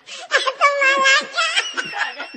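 People laughing: one voice holds a long, high note for about a second, then it breaks into lighter, high-pitched giggling.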